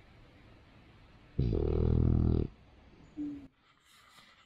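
A dog's low, drawn-out growl lasting about a second, followed a moment later by a short, higher whine.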